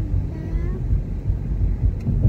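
Car cabin noise while driving: a steady low road and engine sound heard from inside the moving car, with a brief voice sound in the first second.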